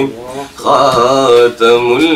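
A man singing an Urdu naat unaccompanied, holding long wavering notes with brief pauses for breath about half a second in and again just after one and a half seconds.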